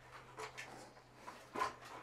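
Quiet background with a steady low hum and a few faint soft noises, about half a second in and near the end.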